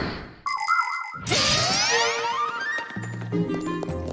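A short cartoon transition sting: about half a second in a bright chime rings, followed by sliding boing-like tones and a run of notes climbing in steps, with a low hum under the last second.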